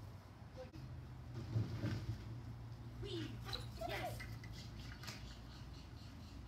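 A steady low hum, with faint, muffled short calls heard through window glass, mostly in the middle of the stretch.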